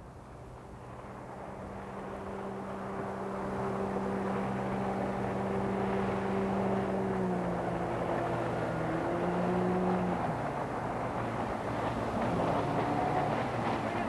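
Outboard motors on small open boats running at speed, growing louder as they approach. The pitch drops about seven seconds in and again near ten seconds as they throttle back, then rises briefly near the end.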